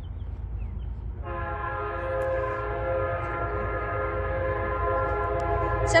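Air horn of an Amtrak GE P32AC-DM locomotive sounding one long, steady blast that starts about a second in, over a low rumble.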